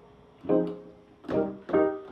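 Digital piano played in short chords: a brief lull, then three chords struck, about half a second in, a little past a second, and just before the end, each ringing out and fading.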